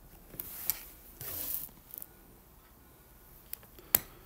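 Two brief scratchy rubbing noises, then a sharp click near the end: small handling sounds.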